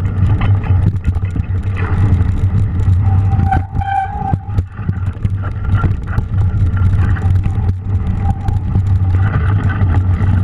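Mountain bike ridden along muddy, snowy singletrack, heard through a GoPro: a steady low rumble of wind and tyre noise. A brief high squeal comes about four seconds in.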